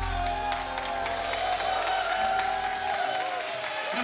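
A live band's final held chord, with a deep bass note, rings out and fades away while the audience claps and cheers.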